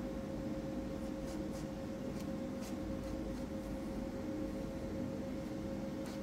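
Faint, light scraping and clicking of a steel palette knife working sculpture paste on a board, over a steady hum.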